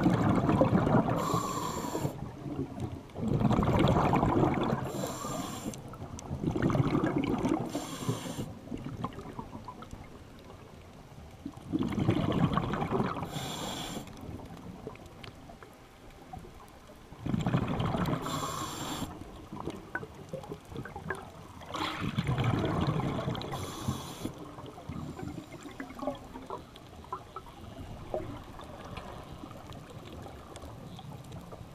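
Scuba diver breathing through a regulator underwater. Six rumbling bursts of exhaled bubbles come about every five seconds, each near a brief high hiss as the regulator delivers air on the inhale. The last few seconds are quieter.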